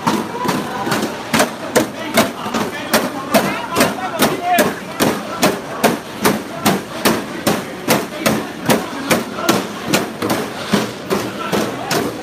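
Steady rhythmic banging, sharp hard strikes a little over two a second, over a background of crowd voices.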